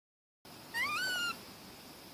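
A young rhesus macaque gives one short coo, rising in pitch and then holding, about three quarters of a second in, after a moment of dead silence. A steady faint hiss lies under it.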